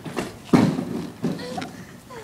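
A few dull thuds, the loudest about half a second in, with brief voices.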